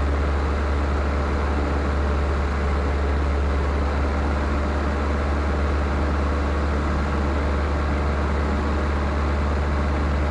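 Luscombe 8A light airplane's four-cylinder engine and propeller running steadily in flight, heard from inside the cabin as a loud, unchanging low drone with a steady hiss above it.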